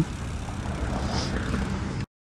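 Steady wind and rolling noise from a recumbent trike being ridden along a concrete path, with wind buffeting the helmet microphone.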